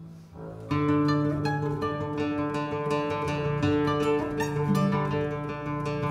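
Two classical guitars and a small string orchestra playing: after a brief lull, the ensemble comes back in under a second in, with plucked guitar notes over held string tones.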